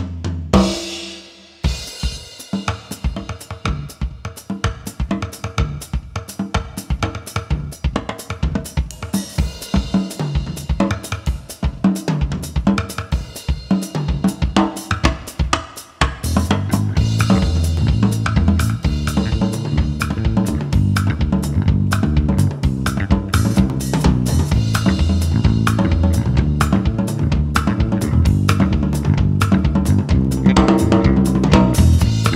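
Band music with a driving drum-kit beat. For the first half the drums play nearly alone; about halfway through a bass line and the fuller band come in, and the music grows louder.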